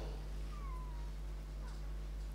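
Low steady electrical hum, with a brief faint falling squeak about half a second in.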